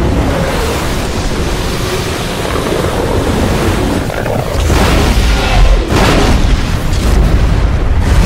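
A film's sound effect of a giant rogue wave breaking over an ocean liner: a deep rumble and rush of water that swells louder about halfway through.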